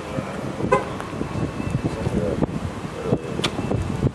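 Street traffic noise with a single short car-horn toot about a second in, and a sharp click near the end.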